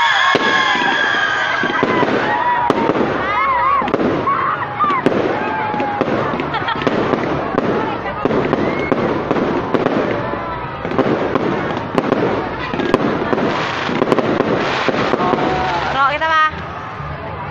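Aerial fireworks bursting and crackling overhead in a dense, continuous volley, with people's voices mixed in.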